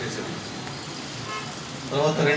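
A short vehicle horn toot about one and a half seconds in, over steady background noise, with the tail of a man's speech at the start.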